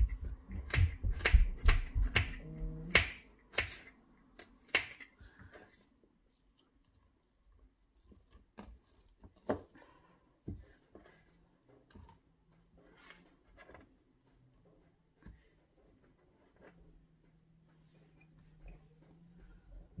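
A kitchen knife chopping half an onion in about a dozen sharp strokes over the first five seconds. Then sparser, softer taps as onion pieces are dropped into a blender cup.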